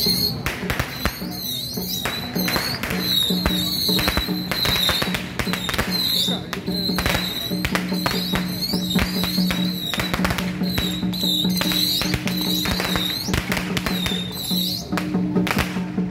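Temple-procession music and street noise: a steady low drone and a high wavering tone that comes and goes, under many sharp, irregular cracks and taps.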